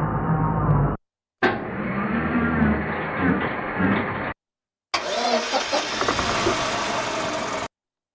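A recorded car-engine sample played from a synthesizer keyboard as three notes on successively higher keys, each cut off abruptly and sounding higher and brighter than the last. It is a single sample stretched across the whole key range, so it is transposed far from its original pitch.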